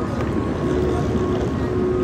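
Busy city street din: a steady low rumble of traffic and engines mixed with the voices of passers-by. A steady mid-pitched hum joins about half a second in.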